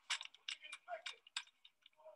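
A quick, irregular run of sharp clicks and taps from a rifle being handled, thinning out toward the end, with brief snatches of voice mixed in.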